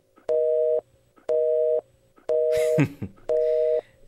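Telephone busy signal: four beeps of a steady two-tone hum, each about half a second long with half-second gaps, the sign that the line is engaged. A brief voice cuts in over the third beep.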